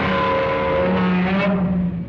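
Loud, dense rumbling noise from monster-film footage, with a few held pitched tones running through it, some of them sliding slightly. The upper part of the sound cuts off about one and a half seconds in and the rest eases down near the end.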